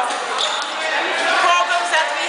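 Voices talking in a large, bare hall, no clear words picked out.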